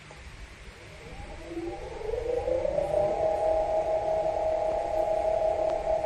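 Meepo electric skateboard's brushless hub motor spinning up with no rider on the board, in high speed mode: a whine that rises in pitch for about two seconds, then holds steady.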